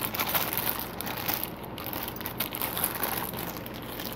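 Plastic packaging crinkling and rustling, with scattered small clicks, as parts are rummaged through.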